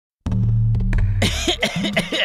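A radio jingle begins with a steady low synth tone and a few sharp clicks. About a second in, a man starts coughing hoarsely over it, playing a sick patient.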